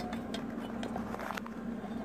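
A few faint clicks and light handling noise from the power supply's sheet-metal cover being moved by hand, over a steady low hum.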